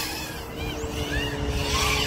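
FPV quadcopter (iFlight IX5 on DYS Sun-Fun 2306 1750kV motors, 6S, 5.1-inch props) flying, its motor whine rising and falling in short swoops as the throttle changes.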